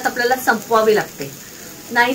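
A woman speaking, pausing for most of a second about halfway through, over a faint steady hiss.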